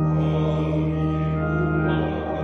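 Pipe organ sounding a loud, sustained full chord as a hymn verse begins, the chord changing near the end.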